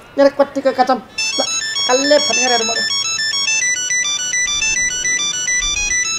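Mobile phone ringtone: a quick electronic melody of high stepped notes, starting about a second in and ringing on.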